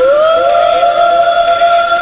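Electronic deep-house music: a sustained synth tone slides up in pitch at the start and then holds steady over another high held tone, with faint regular hi-hat ticks.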